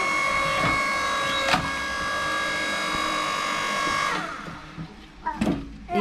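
Electric log splitter's motor running with a steady whine as the ram drives through a log and splits it, with a sharp click about a second and a half in; the motor cuts off about four seconds in, and a short knock follows near the end.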